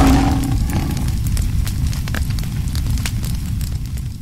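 Sound-effect fire burning: a steady low rumble with scattered crackles, opening with a brief hit.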